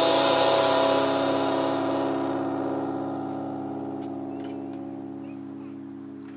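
Amplified electric guitar chord left ringing at the end of a rock song, sustaining and fading away slowly over several seconds. A few faint ticks sound in the second half.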